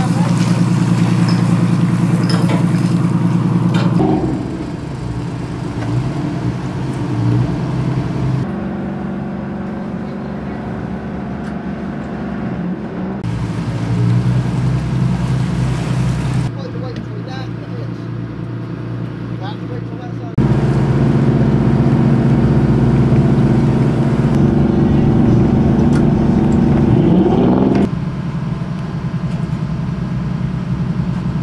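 Workboat engine running steadily in a low, even drone, its pitch and loudness changing in jumps every few seconds between shots, with a short rise in pitch near the end.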